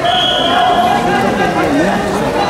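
Many overlapping voices echoing in a large sports hall, shouting and chattering, with a short high steady tone in the first second.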